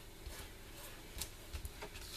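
Faint handling sounds of a paper card and plastic ribbon being pressed down and picked up on a cutting mat: a few light taps and small clicks, most of them in the second half.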